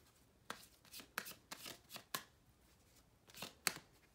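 A tarot deck being shuffled by hand: a run of short, irregular card snaps and rustles, the sharpest near the end.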